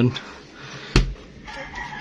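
A refrigerator door knocking shut once with a short thud about a second in, with a rooster crowing faintly in the background.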